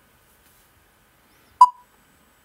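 Near silence, then about one and a half seconds in a single short electronic beep that dies away quickly.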